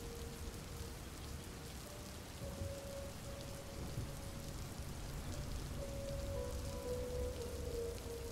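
Steady rain falling, an even hiss of drops, with a few faint held musical tones underneath that shift in pitch now and then.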